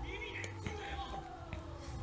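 Faint speech low in the mix, most likely the anime's dialogue playing quietly in the background.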